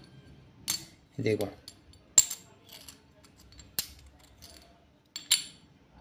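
Sharp metallic clicks of a small disc magnet snapping onto a large copper coin held in the hand, four times about a second and a half apart.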